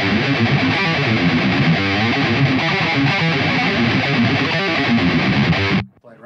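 Distorted ESP electric guitar playing a death metal riff, which cuts off abruptly near the end.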